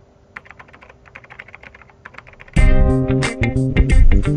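A quick, quiet run of computer keyboard typing, about half a dozen key clicks a second, then loud music with heavy bass cuts in suddenly about two and a half seconds in.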